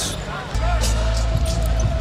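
Arena music with a deep bass line and a held note coming in about half a second in, over a basketball bouncing on the hardwood court.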